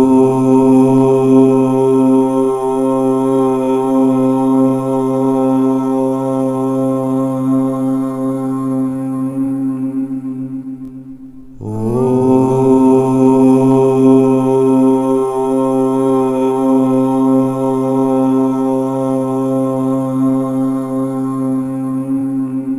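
A low voice chanting 'Om' twice, each held on one steady pitch for about ten seconds. The first fades out near the middle and the second begins about halfway through.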